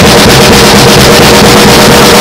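Drum kit played in a fast, even roll of rapid strokes on the drums, recorded at full level so the sound is overloaded and buzzy.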